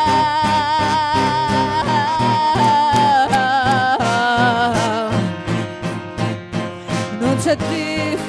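Live rock band playing, with a singer holding one long note with vibrato for about four seconds. The note steps down in pitch, then drums and accompaniment carry on alone before the voice comes back near the end.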